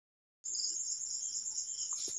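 After a brief dead silence, a faint, high-pitched insect trill starts about half a second in and keeps going steadily, pulsing evenly several times a second.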